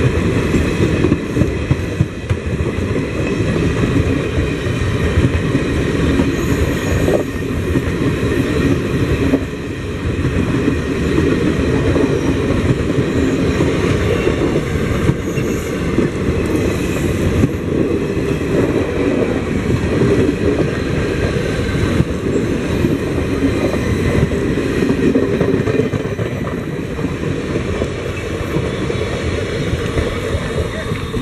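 Passenger coaches of the Howrah–Yesvantpur Duronto Express passing slowly at close range: a steady loud rumble and clatter of steel wheels on rail. It eases a little near the end as the last coach goes by.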